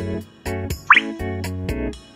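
Light, bouncy background music of short, clipped notes, with a quick rising bloop sound effect about a second in.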